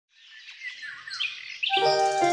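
Small birds chirping and twittering, fading in from silence. Music with held, steady notes comes in underneath near the end while the chirping goes on.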